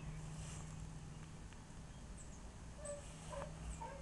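Faint outdoor background: a steady low hum, and in the second half a few short, high chirps from distant birds.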